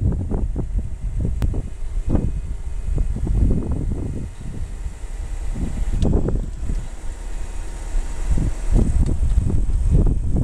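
Wind buffeting the microphone, in gusts, over the faint steady running of the Mitsubishi 3000GT Spyder's power retractable hardtop as it cycles closed, roof panel and trunk lid moving together.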